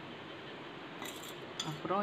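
Two light clinks about a second apart, a glass container knocking against a steel bowl and spoon as grated coconut is tipped in, over a faint steady room hiss.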